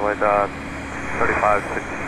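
Air traffic control radio: a narrow, tinny voice transmission ends, a short stretch of radio hiss follows, and another transmission begins before the end.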